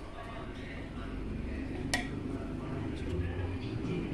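Wooden spatula stirring and lifting cooked biryani rice in a metal pot, with one sharp knock of the spatula against the pot about two seconds in.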